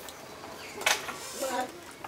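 Outdoor audience ambience with one short, sharp burst of noise about a second in, the loudest moment, followed by a brief voice.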